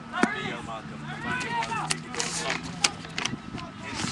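Several people's voices calling out and talking, not close to the microphone, with a few sharp clicks or knocks in between.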